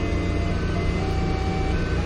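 Doosan 4.5-ton forklift engine running steadily with a low rumble, heard from inside the operator's cab.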